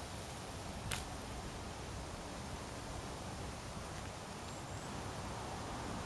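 Quiet outdoor background: a steady low rumble of light wind on the microphone, with one faint click about a second in.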